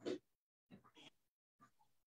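Mostly near silence over a video call, with one short breathy vocal sound from a person right at the start and a few faint murmurs after it.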